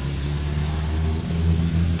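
A vehicle engine idling, a steady low hum.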